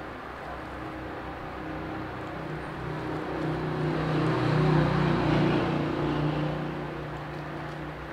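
A motor vehicle's engine running steadily, growing louder to a peak about five seconds in and then fading away.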